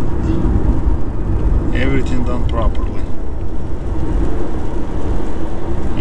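Steady low road and tyre rumble inside the cabin of a BMW i8 driving on electric power alone, with no engine running. A brief voice sounds about two seconds in.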